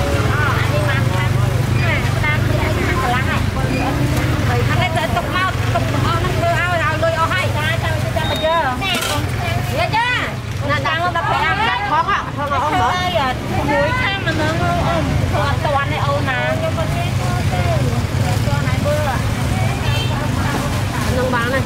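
Several people talking close by in overlapping voices, as at a busy market stall, over a steady low rumble.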